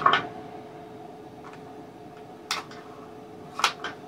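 A few short, sharp clicks from a pistol being handled in its belt holster, about two and a half and three and a half seconds in, over a faint steady hum.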